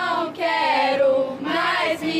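Young voices singing a pop song together to an acoustic guitar, with short breaks between sung phrases.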